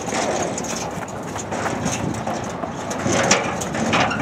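Old metal playground merry-go-round being spun by hand: a steady rolling rumble with a few light knocks.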